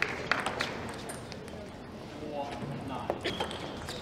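Table tennis ball being struck by rackets and bouncing on the table in a rally: sharp, irregular clicks, with voices and hall noise behind.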